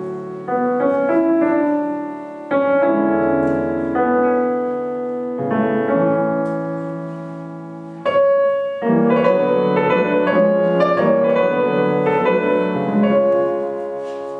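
Grand piano played solo: chords are struck and left to ring and fade, then a busier, louder run of quick notes begins about nine seconds in.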